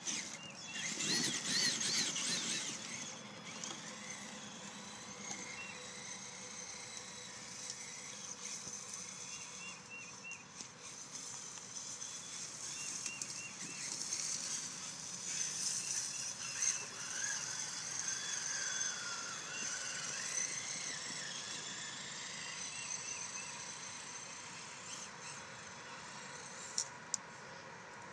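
Traxxas Summit RC truck's electric motor and geared drivetrain whining as it crawls over dirt, the pitch rising and falling with the throttle.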